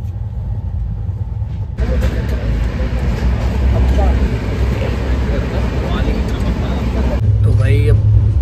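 Running noise inside a moving express train coach: a steady low rumble that jumps, about two seconds in, to a much louder rush of wheel and track noise. A man's voice comes in near the end.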